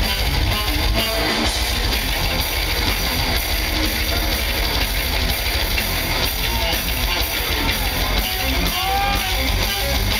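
Death metal band playing live through a festival PA, heard from within the audience: distorted electric guitars and bass over a drum kit, loud and without a break.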